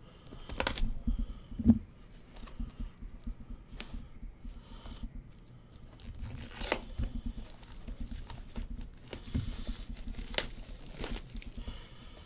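Foil trading-card pack wrapper crinkling and tearing as cards are handled, in irregular crackles with a few sharper snaps.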